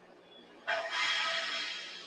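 A sudden burst of hissing gas vented from a Falcon 9 rocket on the pad, with a few steady tones in it. It starts under a second in and fades away over about a second and a half.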